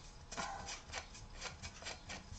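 Plastic lamp holder being fitted onto a brass threaded wood nipple by hand, giving faint, irregular scraping and rubbing strokes of plastic on metal.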